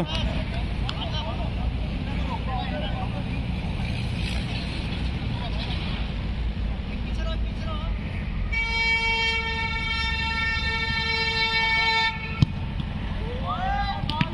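A single steady horn blast, one held pitch, lasting about three and a half seconds from about eight and a half seconds in, over a constant low rumble. A sharp knock comes just after it stops.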